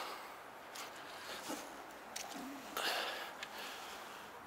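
A breathy sniff or exhale close to the microphone, about three seconds in, over a quiet outdoor background with a couple of faint clicks.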